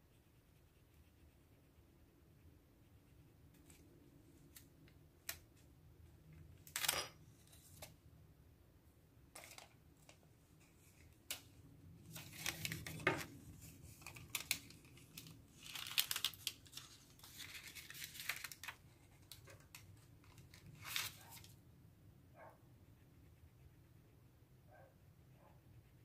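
Faint rustling and crinkling of thin rub-on transfer sticker sheets being handled and rubbed down onto a planner page. It comes in scattered short bursts with a few light clicks, busiest in the second half.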